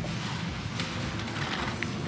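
Steady background noise of a large shop floor, with no distinct event standing out.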